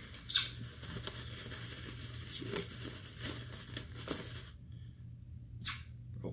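Packaging rustling and crinkling as a box of beard products is unpacked by hand, with a few small clicks. It stops about four and a half seconds in, and one brief rustle comes near the end.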